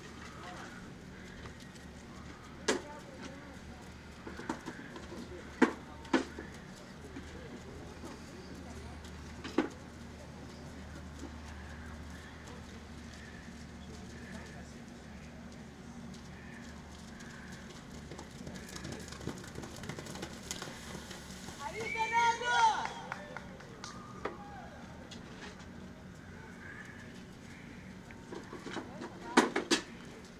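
Open-air arena ambience: a steady low hum with faint distant voices and a few sharp clicks. About 22 seconds in a short wavering high-pitched call stands out as the loudest sound.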